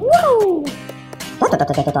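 Cartoon gibberish voice. It opens with one drawn-out vocal sound that rises and falls in pitch. About one and a half seconds in comes a fast run of 'ta ta ta' syllables, over light background music.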